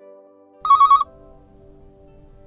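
A single short electronic telephone ring, a trilling burst of about half a second, about halfway in. Soft background music with sustained notes runs underneath.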